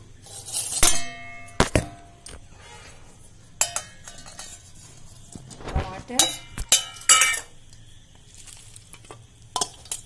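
Stainless steel kitchen bowls clinking and clattering as they are handled. A couple of sharp ringing clinks come about a second in, then a cluster of clatters around six to seven seconds as a bowl of tomato pieces is tipped.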